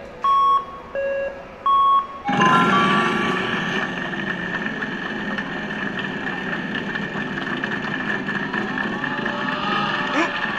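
Wheel of Fortune slot machine sounding its spin prompt, a low beep and a high beep alternating about every 0.7 s. About two seconds in, the bonus wheel is set spinning: a loud burst of music with a few rising notes, then steady music over fine rapid ticking as the wheel turns.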